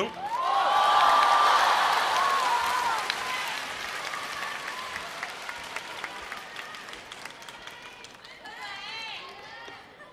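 Large audience applauding, with a few shouts in the first couple of seconds. The applause swells about half a second in and then slowly dies away. A few voices can be heard near the end.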